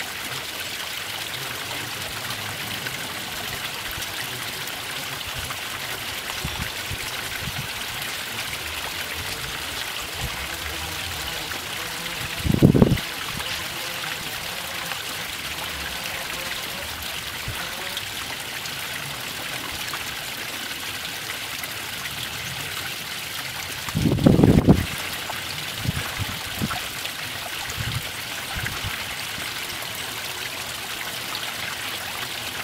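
Water of a small garden stream trickling and splashing steadily over a low stone waterfall. Twice, about 12 seconds in and again about 24 seconds in, a brief low rumble rises over the water.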